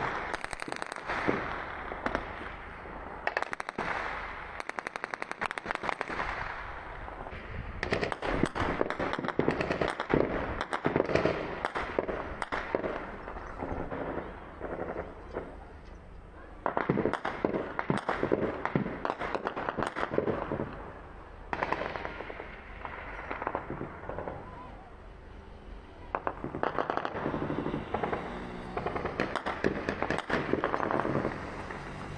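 Heavy automatic gunfire in rapid bursts mixed with single shots, sounding across an armed tribal clash, with short lulls between volleys.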